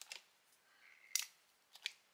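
A few light, sharp clicks of a Sharpie marker being picked up and uncapped: one at the start, one just past a second in, and one near the end.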